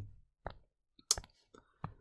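A few faint, sharp clicks, about four over two seconds, from operating a digital drawing tool while a highlighter line is drawn on screen.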